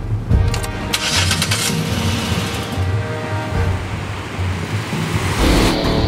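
A car engine started with the ignition key: a click, a brief crank, then the engine running with a steady low rumble. Loud rock music from the car stereo starts near the end.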